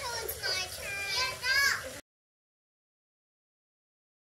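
Young children's high-pitched voices for about two seconds, then an abrupt cut to dead silence.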